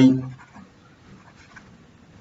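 Faint scratching of a stylus writing by hand on a tablet, a few short strokes.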